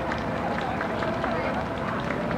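Faint voices of people talking over steady outdoor background noise, with a few scattered light taps.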